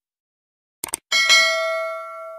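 A quick double click, then a single bright bell ding that rings on and fades away. These are the click and bell sound effects of a subscribe-button animation.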